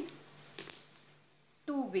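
Dried kidney beans dropped into a small plastic bowl: a quick pair of light clicks with a brief high ring, a little after half a second in.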